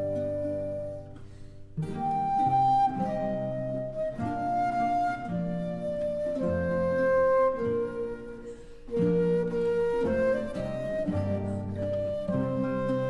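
Instrumental interlude by an early-music ensemble: a flute plays a slow, sustained melody over a plucked-string accompaniment, with short breaks between phrases about a second and a half in and again near nine seconds.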